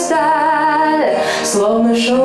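A woman singing into a handheld microphone: long held notes with a wavering vibrato, a short break with a soft hiss about halfway through, then a lower held note.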